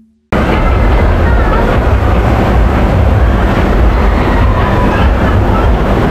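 Onboard sound of the Big Splash water ride in motion: a loud, steady rumble of the boat running on its track, cutting in suddenly about a third of a second in.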